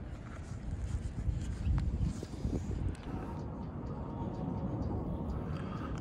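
Low, steady outdoor rumble with a few faint clicks as solar cable connectors are handled and plugged in.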